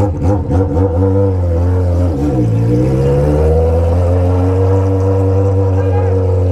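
Honda Hornet's inline-four engine through a straight-pipe exhaust with no muffler, running at low revs as the motorcycle rolls slowly. About two seconds in the revs dip, then climb gently and hold a steady note.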